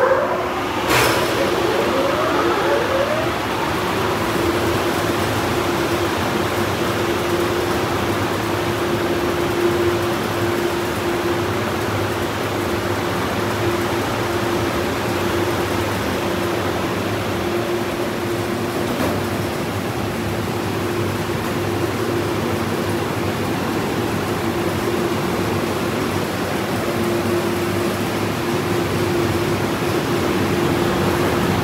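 Car-wash gantry dryer blower finishing its spin-up, rising in pitch over the first few seconds. It then runs steadily with a loud rush of air and a constant hum.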